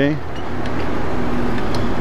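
Steady rushing noise of riding a bicycle along a city street, picked up by an action camera: wind and road noise with traffic in the background.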